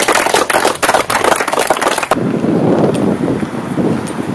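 A small group clapping, a dense run of sharp claps that cuts off suddenly about two seconds in. After it comes street traffic noise with wind on the microphone.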